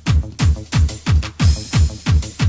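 Makina/hard-trance electronic dance track with a fast four-on-the-floor kick drum, about three beats a second, each kick dropping in pitch. A burst of high hiss swells in over the beat in the second half.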